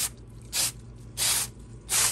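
Aerosol can of Krylon Stone coarse-texture spray paint sprayed in quick short bursts, about one every two-thirds of a second, while a light first coat is laid over the track and blown off its edge.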